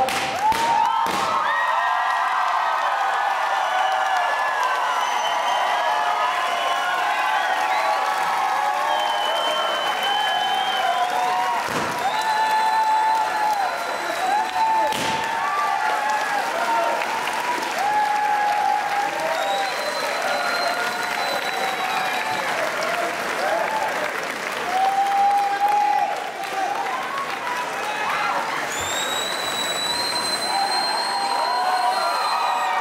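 A large audience applauding and cheering, a steady mass of clapping with shouts and whoops rising over it.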